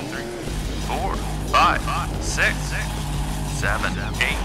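Monster truck engine sound effect: a steady low rumble that comes in about half a second in, with high voices calling over it.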